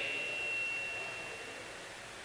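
Pause in amplified speech: a faint steady high ringing tone from the public-address system, left over from the last words, fades out over about a second and a half above low hiss.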